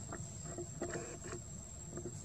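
Soft, irregular clicks and crunches of long-tailed macaques chewing young corn, over a steady high-pitched whine.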